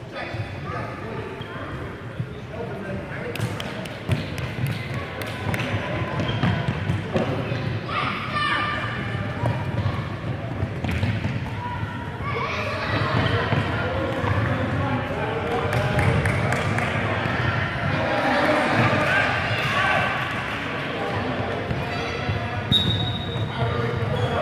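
Indoor five-a-side football being played on a wooden sports-hall floor: repeated knocks of the ball being kicked and bouncing, with children and adults calling and shouting, louder and busier in the second half. The hall gives everything an echo.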